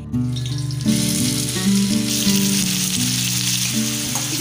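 Chopped onions sizzling in hot oil in a stainless steel pan: the sizzle sets in about a second in and grows louder, a steady hiss. Background music plays under it.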